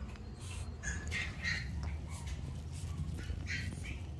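Shih Tzu puppy whimpering: several short, high-pitched whines about a second in and again near the end, over a low rumble.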